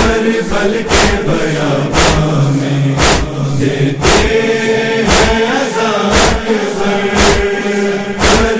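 A chorus chanting a sustained, wavering drone in the interlude of a noha, over heavy rhythmic strikes about once a second, the hand-on-chest beats of matam.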